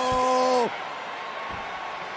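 A man's shout held on one pitch for under a second, then the general noise of an arena crowd.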